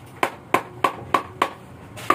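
A wooden block striking a steel CMS motorcycle muffler can: six sharp knocks at about three a second, each with a short metallic ring. The muffler is being knocked loose so that it can be taken apart.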